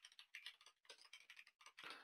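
Faint typing on a computer keyboard: a quick, uneven run of about ten keystrokes.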